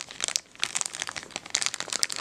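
A thin clear plastic bag crinkling in the fingers as it is handled: a dense run of sharp crackles, with a brief lull about half a second in.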